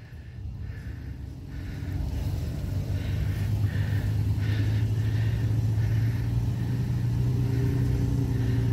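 Pickup truck engine working under load, pulling a mud-stuck truck out on a recovery strap; its low, steady drone grows louder from about two seconds in and then holds.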